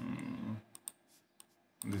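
A man's voice gives a short wordless 'mm' at the start, then a few sharp computer mouse clicks follow about a second in.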